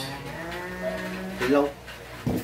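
A woman's long closed-mouth "mmm" hum of relish while eating, held at a steady low pitch, then rising into a short louder vocal sound near the end.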